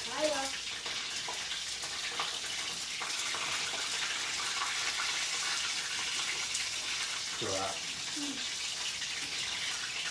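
Steady sizzling hiss of food frying in a pan of oil, with a few brief spoken words just after the start and again near three-quarters of the way through.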